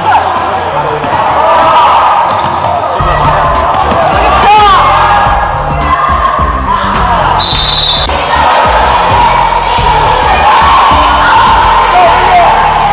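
Basketball game in a gym: the ball bouncing on the wooden floor, sneakers squeaking, and crowd voices, with a brief high tone about seven and a half seconds in.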